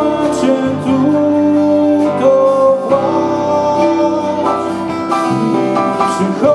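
Live band playing a song: acoustic guitar, electric bass guitar, keyboard and drum kit, with long held notes.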